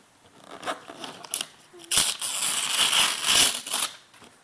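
Wrapping paper being torn and crumpled off a gift box: a few light rustles at first, then about two seconds of loud, continuous tearing and crinkling in the second half.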